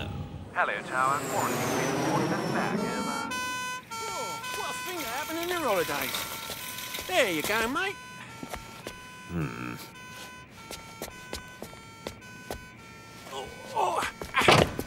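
Cartoon ambulance siren sounding a two-tone hi-lo call, switching back and forth between two notes about every half second. It starts a few seconds in and stops shortly before the end, with grunting voices and music over it at first.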